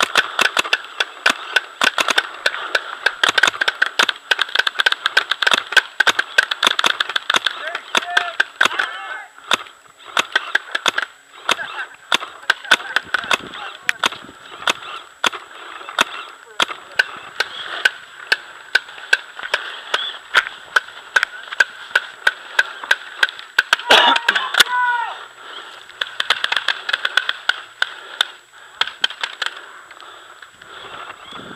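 Paintball markers firing many sharp shots, singly and in quick strings, some loud and close and others fainter, with distant shouting behind them.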